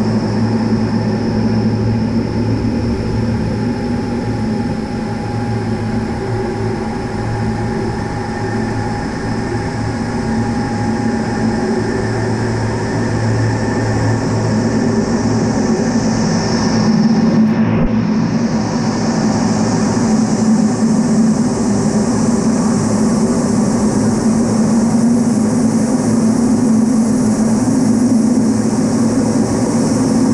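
Cockpit noise of an A-10 Thunderbolt II in aerobatic flight: a loud, steady rush of airflow with the whine of its twin TF34 turbofan engines. About halfway through, the high whine briefly dips and comes back.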